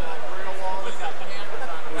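A man speaking over the steady background babble of a crowded exhibition hall.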